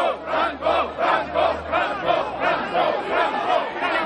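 A large crowd shouting a chant together, many voices in a regular beat of about two shouts a second.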